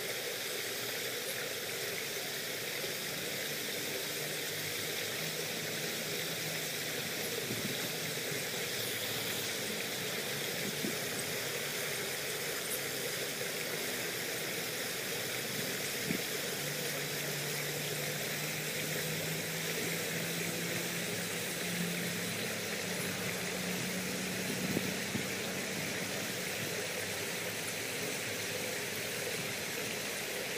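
Steady rushing of a shallow stream's flowing water, with a faint low hum that rises slightly in the second half and a few small clicks.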